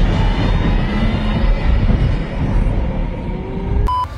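A loud, deep rumbling horror sound effect, a steady low drone, that cuts off abruptly near the end.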